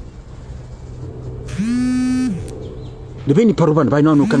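A man's voice holding one drawn-out vocal sound at a steady pitch for under a second, about one and a half seconds in, then speaking again near the end, over a low steady hum.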